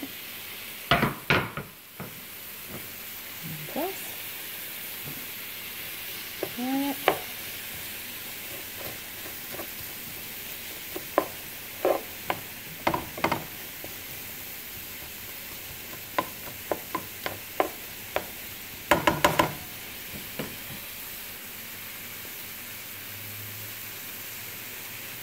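Chicken and vegetables frying in a little vegetable oil in a pan, a steady sizzle, while a utensil stirs them and clacks against the pan in scattered strokes, a quick cluster of them near the end.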